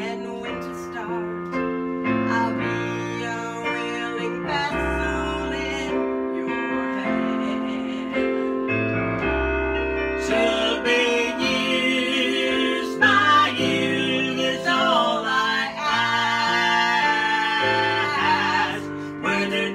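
A woman singing a gospel song with vibrato over piano accompaniment, her voice growing fuller and louder about halfway through.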